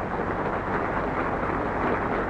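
Audience applause, a dense patter of clapping that sets in as the song's last notes die away.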